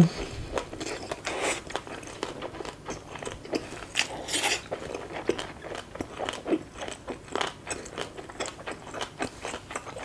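Close-miked chewing of a mouthful of spicy green papaya salad with the mouth closed. Many small, irregular wet crunches and clicks come through, with a few louder crunches.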